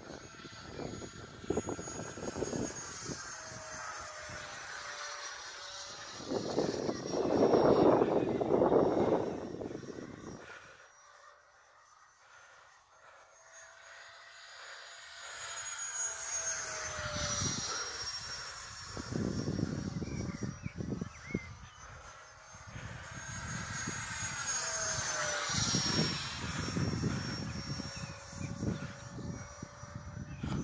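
A 10-blade alloy electric ducted fan on a 3000 kV inrunner motor whines in flight in a model MiG-15 jet. Its pitch rises and falls as the jet passes, twice in the second half. There are louder rushing surges around eight seconds in and again later, and the sound nearly fades out in the middle while the jet is far off.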